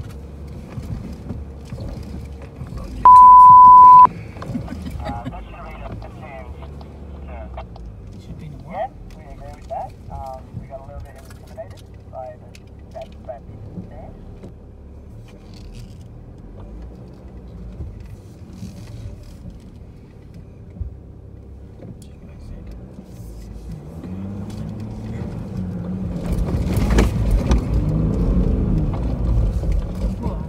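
Four-wheel drive's engine running, heard from inside the cabin while it drives along a soft sand track, building to a louder, revving pull near the end as it climbs a sand dune. A loud, steady one-second beep sounds about three seconds in.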